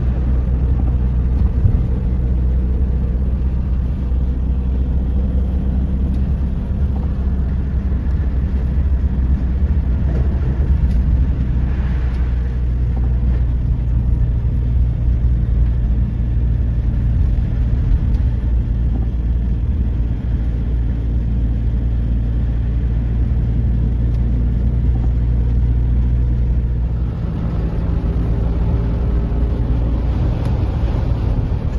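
A vehicle's engine and road noise heard from inside the cab while driving on a snow-covered road: a steady low drone. The drone changes character about 27 seconds in.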